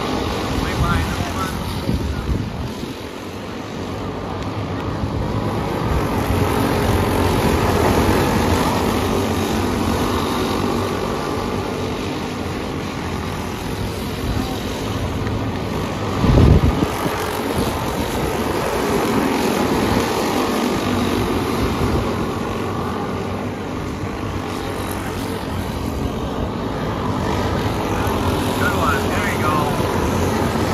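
A field of racing karts' small engines buzzing around a dirt oval, swelling and easing as the pack comes by and moves away. About sixteen seconds in there is a brief loud low thump.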